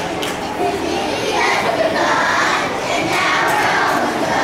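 A class of young children shouting and cheering together, many voices at once with no clear words.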